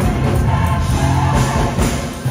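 Gospel choir singing over instrumental accompaniment with a sustained bass line.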